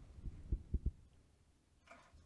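Four soft, low thumps in the first second, then near quiet: handling noise from hand and body movement close to a clip-on microphone.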